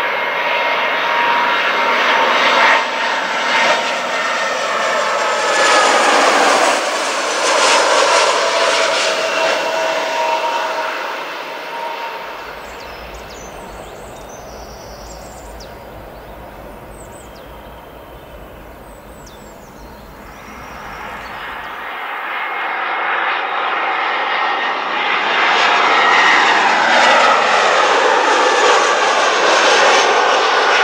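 Airbus A320 jet airliners on landing approach, the engines passing close with a whining tone that drops in pitch as the plane goes by. The noise fades about twelve seconds in, and a second airliner builds up loud again over the last third.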